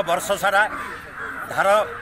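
Only speech: a man talking in Odia into a handheld microphone, with a short pause in the middle.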